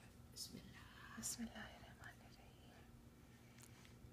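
Near silence with faint whispering in the first two seconds.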